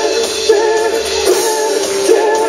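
Live band playing a song: banjo, acoustic guitar, electric bass and drums, with a lead vocal singing over them.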